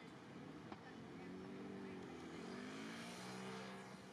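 Street traffic with one motor vehicle's engine drone swelling about a second in, its pitch dipping and then rising. A single click comes just before the engine swells.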